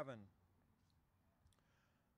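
Near silence after a man's spoken word ends, with two faint clicks about a second and a second and a half in.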